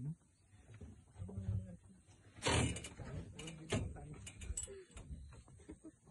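Low, hushed voices of people murmuring, with scattered clicks and rustling. A brief, loud rustle about two and a half seconds in is the loudest sound.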